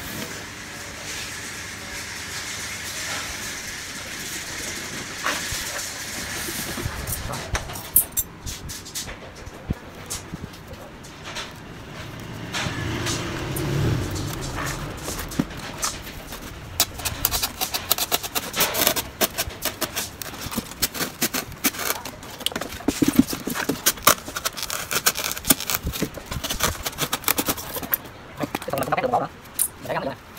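Knife cutting through a foam box lid: a rapid, irregular run of scratchy clicks and scrapes, busiest in the second half.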